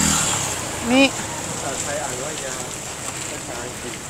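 Street traffic noise: a vehicle passing close at the start, fading within about half a second, then steady street noise with faint voices in the background.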